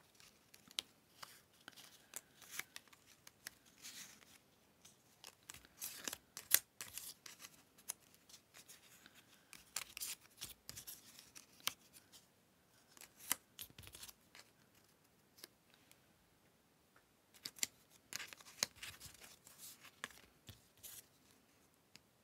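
Paper pieces being handled on a cork desk: quiet, irregular rustles, slides and light taps as cut paper circles are picked up, moved and tucked into paper pockets.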